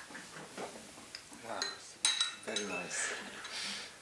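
Ceramic teacups, saucer and teaspoon clinking on a table in a few light knocks. The sharpest clink comes about two seconds in and rings briefly.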